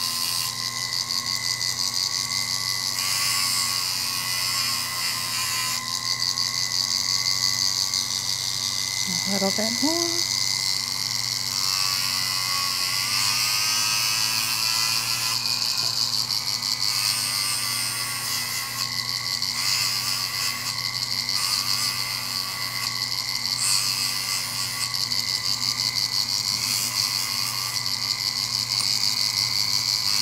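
A small electric rotary tool running with a steady high whine as a red grinding disc works the enamel of a cloisonné earring. Its pitch dips and wavers slightly as the piece is pressed against the disc and eased off.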